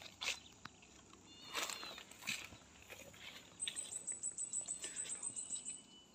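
High chirping calls of a wild creature, rising in the second half to a rapid high-pitched trill of about six notes a second lasting some two seconds, over a few crunches of dry leaf litter underfoot.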